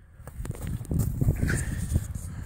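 Footsteps and handling noise on a handheld camera: irregular low thumps and rustling with a few sharp clicks.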